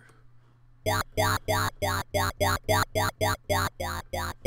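Dubstep "talking" wobble bass from Ableton's Operator synth. It is a square wave run through a Low 24dB filter that an LFO sweeps, then downsampled by the Redux effect. From about a second in it plays short notes at about four a second, each with a vowel-like sweep, and it has a bit of a ruder sound from the sharper filter cutoff.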